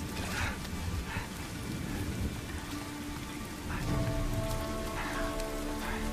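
Steady rain falling, with low rumbles of thunder near the start and again about two-thirds of the way in. Sustained notes of a film score come in from about halfway.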